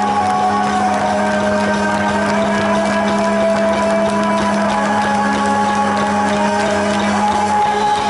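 A live rock band's amplified instruments holding a sustained, ringing chord, its notes held steady, the low note cutting off near the end.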